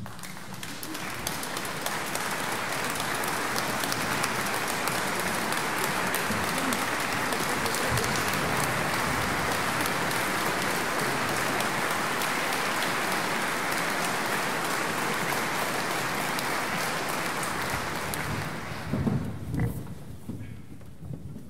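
Audience applause, swelling in over the first couple of seconds, holding steady, then dying away near the end with a few low thumps.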